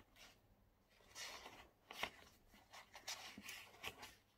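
Pages of a thick paperback book being leafed through: a series of faint paper rustles and flicks, the sharpest about two seconds in.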